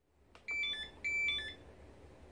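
Electronic beeper sounding two short beep sequences about half a second apart, each a quick run of several tones of different pitch.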